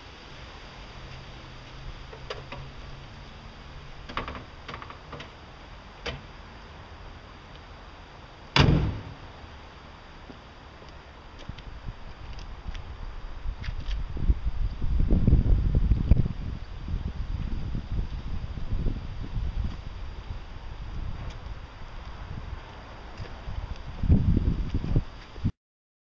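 A car bonnet slammed shut on a Vauxhall Corsa: one loud sharp bang about a third of the way in, among light clicks and knocks of work on the car. Later come stretches of heavy low rumbling noise, and the sound cuts off abruptly just before the end.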